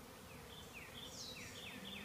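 Faint, steady hum of honeybees flying around an opened hive. A run of short, falling whistled notes starts about half a second in.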